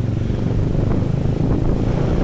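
Motor scooter's small engine running steadily while riding along.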